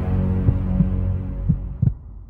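Cinematic logo-intro music: a deep, low drone dying away after a big hit, with a few low thumps, fading out near the end.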